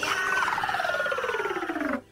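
Cartoon falling sound effect: a wobbling, whistle-like tone that glides steadily down in pitch and cuts off abruptly at the end.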